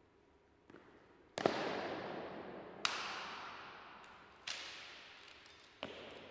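Ceremonial drill on a marble floor: boot stamps and a rifle being grounded as two soldiers halt and come to attention. There is a fainter knock, then four sharp cracks about a second and a half apart, each ringing out in a long echo through the stone hall.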